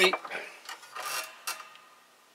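A few light clicks and a brief rub from a small metal carburetor part being handled, ending in a sharp click about one and a half seconds in.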